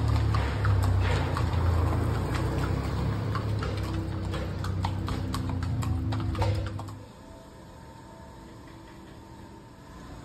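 Horses' hooves clip-clopping on a paved street as several ridden horses walk past, a quick uneven run of hoof strikes over a low steady hum. Both stop about seven seconds in, leaving only quiet background.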